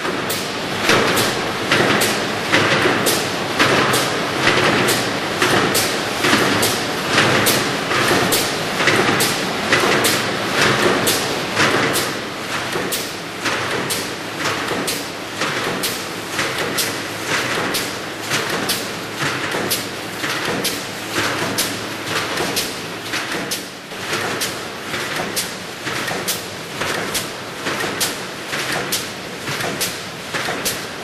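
Tunatek TT11C wire mesh welding line running, its row of pneumatic welding heads cycling with a regular clunk somewhat more than once a second over a steady machine noise.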